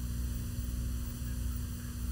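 Steady low electrical hum with faint hiss, the background noise of an old videotape recording.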